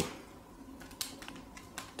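Several light clicks and taps in a quiet room: a sharp one about a second in, then a few fainter ones.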